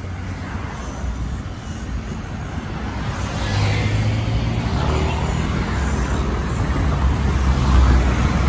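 City road traffic: car and truck engines running close by, a low rumble that grows louder about halfway through.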